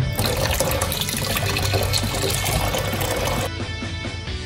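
Tap water running into a blue plastic bucket, a steady hiss that cuts off suddenly near the end, over background guitar music.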